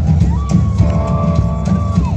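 Live rock band playing: drum kit and bass guitar driving a steady beat, with one high note held from about a third of a second in until near the end.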